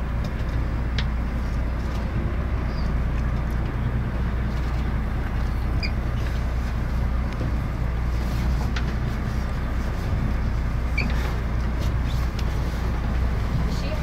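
Engine of a whale-watching boat running steadily, heard from on board as a constant low hum.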